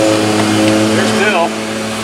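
Lawn mower engine running steadily at one constant speed.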